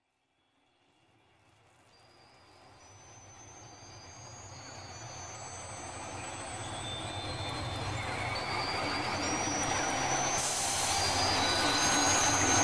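Opening of an electronic instrumental track: a dense wash of noise fades in from silence and grows steadily louder, with high sustained tones stepping in one after another. The high hiss jumps up sharply about ten seconds in.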